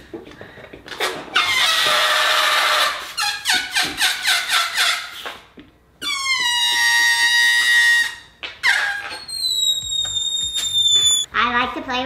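Helium hissing out of a disposable helium tank's nozzle into a latex balloon. Then the balloon's neck is stretched between the fingers, letting gas escape in a loud squeal lasting about two seconds and falling slightly in pitch. A thinner, higher squeal follows near the end.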